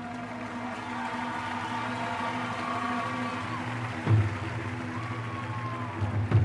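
Drum corps brass playing a slow sustained melody over a held low chord, with a single heavy low drum hit about four seconds in.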